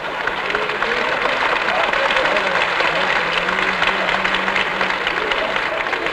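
Live theatre audience applauding, with some laughter, in answer to a joke in a comic monologue.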